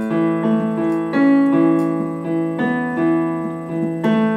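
Piano keyboard playing a short riff: single notes struck in a steady eighth-note rhythm, with some of the E's held out a little longer.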